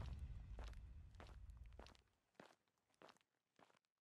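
Faint footsteps of one person walking at a steady pace, a little under two steps a second, fading away. A low background-music tail dies out in the first two seconds.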